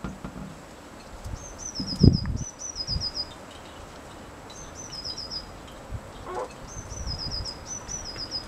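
A small wild songbird singing three short phrases, each a quick run of high, falling notes. Low thumps sound underneath, the loudest about two seconds in.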